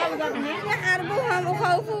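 A woman speaking in Arabic, with other voices overlapping.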